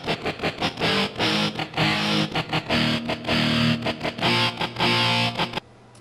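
Distorted electric power-chord guitar part from the Voice Band iPhone app, synthesized in real time from a sung voice, playing back as a rhythmic run of short chord strokes that cuts off suddenly shortly before the end.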